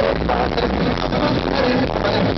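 Live band playing a pop-rock song at a concert, loud and continuous, in a low-quality audience recording.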